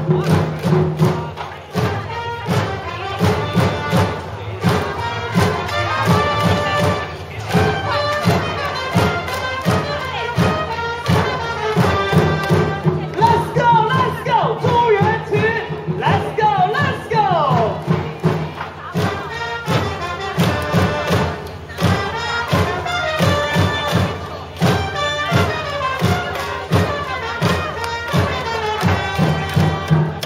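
A baseball cheering section's batter cheer song, with music over a steady drum beat and the crowd singing and chanting along.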